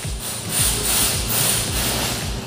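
A steady hissing noise that swells a little about half a second in, with a thin high whine and quiet background music underneath.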